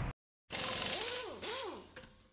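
After a brief dead silence, a short editing sound effect starts about half a second in: a hissing whoosh with pitch sweeps that swoop up and down twice, fading out near the end.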